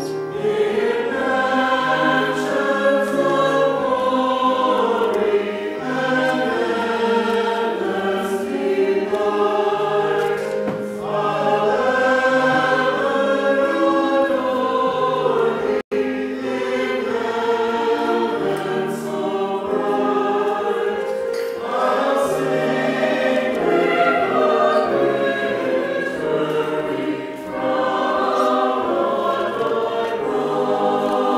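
Small church choir of men's and women's voices singing in parts with piano accompaniment. The sound cuts out for an instant about halfway through.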